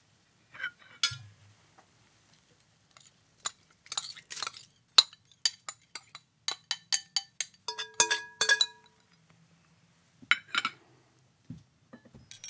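Glass and china clinking on a table: a glass bowl, cups and spoons being handled and set down, a run of sharp clinks, some ringing briefly.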